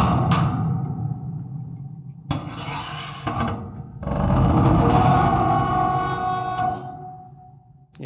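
Completely unprocessed contact-mic recording of a large iron pipe and its metal grating bowed with a violin bow: dense metallic drones with steady ringing tones. A bowed stroke rings and fades, a short one comes about two seconds in, and a long one starts about four seconds in and dies away near the end.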